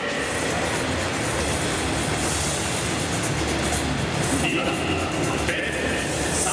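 Steady ballpark din with a low rumble, with a public-address voice and music coming over the stadium loudspeakers.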